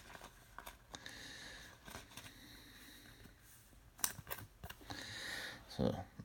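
Faint rustle of a trading card being handled and slid into a clear plastic card sleeve, with a few small clicks and scrapes about four seconds in.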